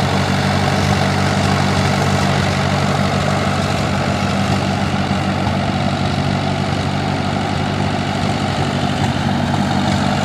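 Vintage Ford N-series tractor's four-cylinder engine running steadily at low speed as the tractor moves off slowly, its level even throughout.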